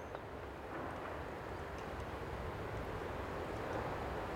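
Steady outdoor rushing noise, growing slightly louder, with no distinct events.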